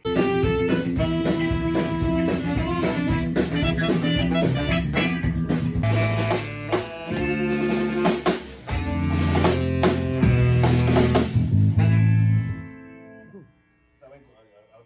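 A band playing a rock groove in rehearsal: electric bass and drum kit together, with sustained pitched notes over the top. The music starts suddenly and stops about twelve and a half seconds in, ringing away briefly.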